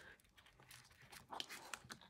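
Faint rustling and light clicks of paper and card being pressed and handled by hand against a metal ruler, a little louder a bit past halfway.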